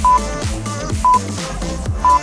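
Workout interval timer's countdown beeps: two short, identical high beeps one second apart, counting down the last seconds of a rest period before the work interval, over electronic dance music with a steady beat.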